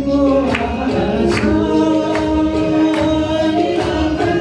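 Nepali Christian song: voices singing a held melody over a steady percussion beat.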